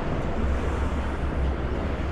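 Steady low rumble of outdoor city noise, distant traffic with wind buffeting the microphone.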